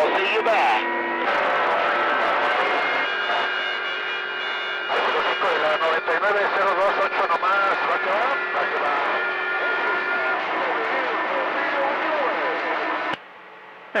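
CB radio receiver on channel 28 picking up skip: garbled, unintelligible voices buried in static, with steady whistling tones from overlapping carriers. The signal cuts out to a quieter hiss shortly before the end.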